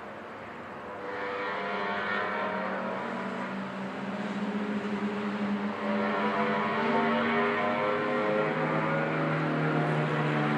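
Small go-kart engines running on the track out of view, more than one at a time, their pitch rising and falling as they accelerate and lift. The sound grows louder about a second in and again around six seconds in.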